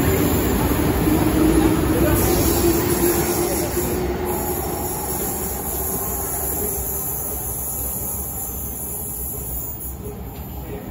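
RER B MI79 electric multiple unit pulling out of the station: traction motor hum and wheel-on-rail running noise, loudest at first and fading steadily as the train moves away.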